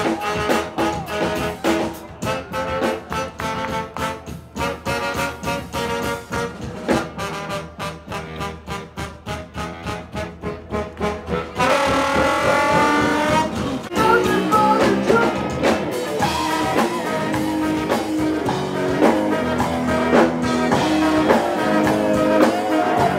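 A live brass-led funk-jazz band. For the first half the band plays quick, repeated staccato hits. About twelve seconds in comes a long held horn note, and after that the full band plays on.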